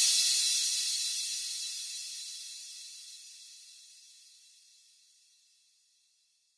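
The closing hit of an electronic reggae remix dying away: a high hissing wash that fades out steadily over about four and a half seconds, then silence.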